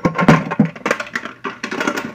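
A quick, irregular run of knocks, taps and rustles from things being handled and moved right beside the phone's microphone.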